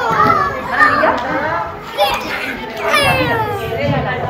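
Many small children's voices chattering and calling out at once, with adult voices mixed in.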